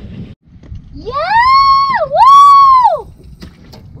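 A woman's high-pitched celebratory yell, a drawn-out "Yeah!" then "Woo!", sung out as two long held notes with a quick dip between them. It starts about a second in and lasts about two seconds, over a low steady rumble.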